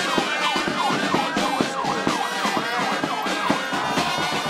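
A siren in a fast yelp pattern, its pitch sweeping up and down about three times a second.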